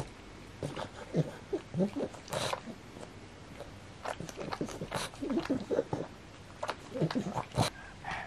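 A pug snorting and grunting while gnawing and licking a rubber chew toy, with wet smacking mouth sounds in irregular bursts; a few sharper snorts stand out.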